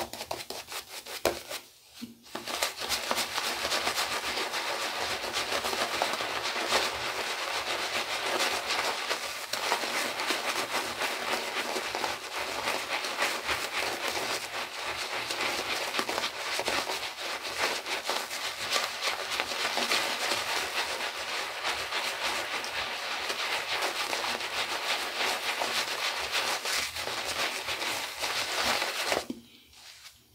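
Merkur 34C double-edge safety razor with a Voskhod blade cutting through two days' stubble on a lathered cheek: a dense, crackling scrape of repeated short strokes. It starts after a brief pause about two seconds in and stops just before the end.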